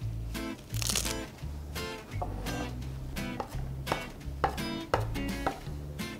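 Chef's knife chopping fresh cilantro on a wooden cutting board, a series of short knife strikes, over background music with a steady bass line and plucked guitar.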